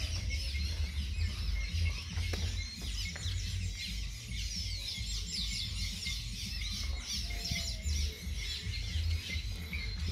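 Birds chirping throughout in many short, quick, high calls, over a steady low rumble.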